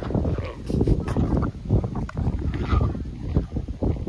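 Gusty, uneven rumbling buffeting on the phone's microphone, with a few soft puffs.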